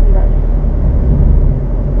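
Steady low rumble of a car's engine and tyres heard inside the cabin, cruising at about 35 km/h in third gear.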